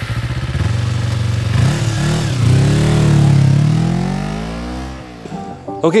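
A motorcycle engine idles with an even beat, then revs twice. The second, longer rev climbs in pitch and falls away, and the sound fades out about five seconds in.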